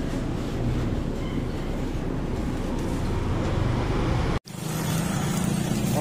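Steady street and traffic noise. About four seconds in, a sudden cut switches to a motorcycle engine idling with a steady low hum.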